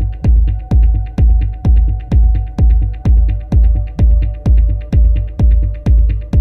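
Dub techno track: a steady four-on-the-floor kick drum about twice a second with a deep bass tail on each beat, under held synth chord tones, with short ticks between the kicks.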